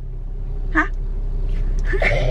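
Steady low drone of a moving car heard from inside the cabin, with one short vocal 'hả?' a little under a second in.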